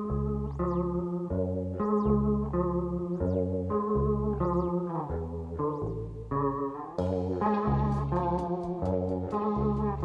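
Jazz-fusion band playing an instrumental passage: a repeating plucked guitar figure over bass guitar. Sharp percussion hits join about seven seconds in.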